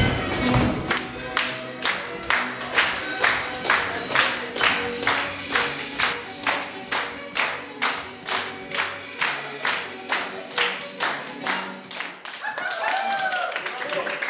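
A group of people clapping in unison, a little over two claps a second, over music with a steady pitched backing. The clapping keeps time for a hopak dance and stops near the end, when a voice is heard.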